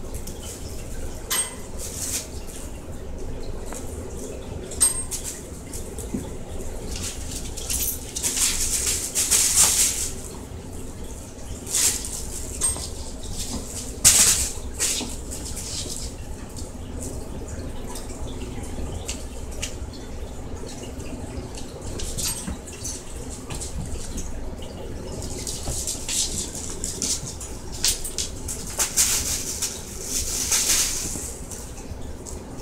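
A dog and a kitten playing on a wooden floor: short, irregular bursts of rustling and scuffling with a few sharp clicks, over a steady low hum.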